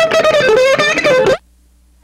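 Loud electric-guitar rock music with sustained, bending notes, cutting off abruptly about a second and a half in and leaving only a faint hum.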